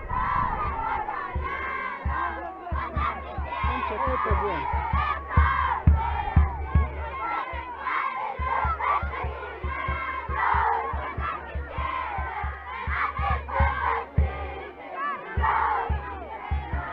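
Football spectators shouting and cheering, many voices overlapping, with low thumps running beneath.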